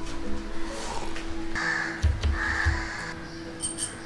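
Background music with steady held tones, and a crow cawing twice about halfway through.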